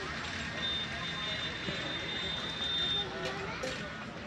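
Indistinct distant chatter over a steady outdoor hum, with a thin, high, steady whine for about two and a half seconds.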